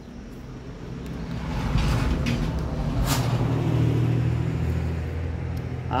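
A motor vehicle's engine running low and steady, growing louder over the first two seconds and then holding, with a brief hiss about three seconds in.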